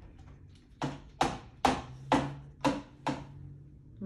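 A run of six sharp, evenly spaced taps or knocks, about two a second, over a faint low steady hum.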